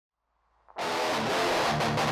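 Rock band music with electric guitars, starting suddenly out of silence about three-quarters of a second in and then carrying on at a steady level.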